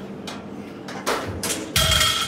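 Loaded barbell with three plates a side lowered to the floor at the end of a deadlift rep. Two knocks come about a second in, then the loudest clank near the end, with the plates ringing after it.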